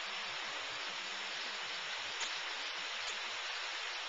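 Steady rushing of water spilling down a boulder waterfall, an even hiss with one faint tick a little after two seconds in.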